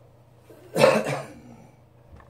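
A man coughs once, loud and sudden, about a second in.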